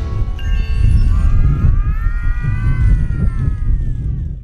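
The dance music cuts off, leaving an uneven low rumble like wind on the microphone. Several faint high tones glide slowly up and down above it.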